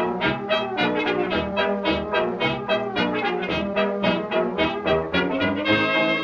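Instrumental dance-band music led by brass, with a steady beat and no singing.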